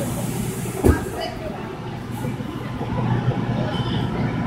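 Steady low hum of an inflatable air track's electric blower, with one sharp thump about a second in and faint children's and adults' voices.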